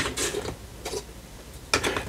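Round plastic miniature bases clicking and scraping as they are pushed into a movement tray: a sharp click at the start, then a few lighter clicks and rubs.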